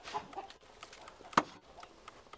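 Chickens clucking briefly near the start, then a single sharp click about one and a half seconds in, the loudest sound.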